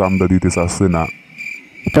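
Crickets chirring steadily as background ambience, one steady high tone. A voice speaks over it for the first second or so, then stops, leaving only the crickets.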